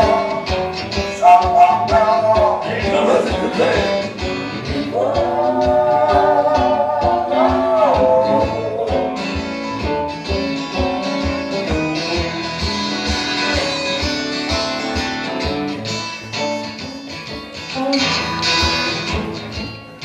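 Electric and acoustic guitars playing a blues instrumental break together over a steady low beat.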